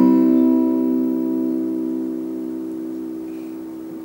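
Acoustic guitar's last strummed chord of the song ringing out and slowly fading away.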